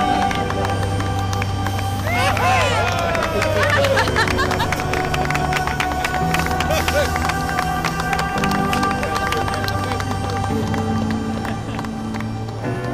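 Background music with steady, changing bass notes, and a group of voices rising together for a couple of seconds, about two seconds in.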